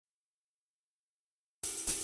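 Silence, then about one and a half seconds in a smooth jazz backing track starts abruptly, opening on drum kit with cymbal and hi-hat.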